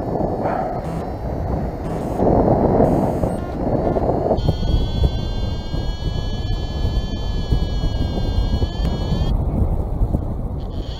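Wind rushing over the microphone in flight under a paraglider. About four seconds in, a steady high electronic tone joins it and holds for about five seconds before cutting off.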